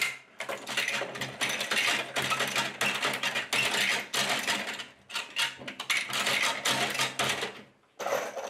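Hand-operated machine-gun belt-loading machine clattering as it seats rifle cartridges into a metal ammunition belt: rapid, continuous metallic clicking, with a brief pause about five seconds in.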